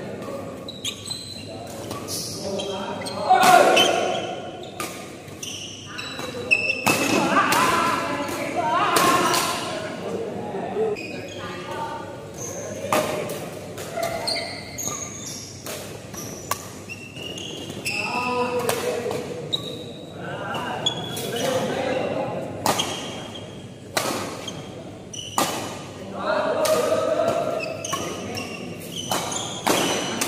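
Badminton rackets striking a shuttlecock in a fast doubles rally: sharp cracks at irregular intervals, echoing in a large hall, with shouting voices at times.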